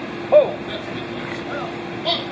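A short voice sound, most likely a man's word or call through the stage PA, about a third of a second in, with a fainter one near the middle, over a steady low held hum.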